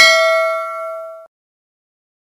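A bell-like notification chime sound effect for the outro's Subscribe-bell animation: a single ding of several pure tones that rings and fades, then cuts off abruptly just over a second in, leaving dead silence.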